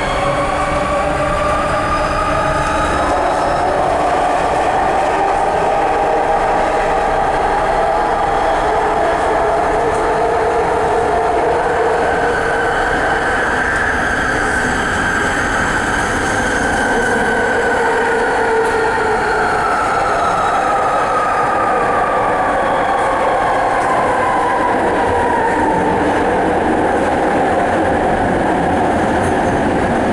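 Interior sound of a rapidKL ART Mark III metro car running on its linear induction motors: steady rolling noise with an electric traction whine in several tones. Over the second half the whine falls steadily in pitch as the train slows into a station.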